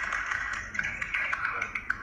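Thin, tinny audio, music-like, played through a tablet's small built-in speaker, with a few sharp ticks; it fades out near the end.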